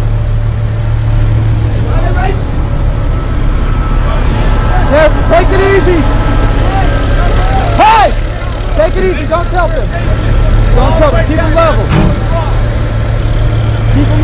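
A heavy military vehicle's engine running steadily, a constant low hum, with men's voices calling out over it now and then.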